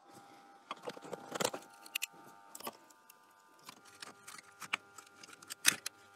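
Glued plastic housing of a smart plug being pried apart while the plug is clamped in a metal vise: scattered small clicks and cracks as the glued seam gives, the loudest about a second and a half in and just before the end.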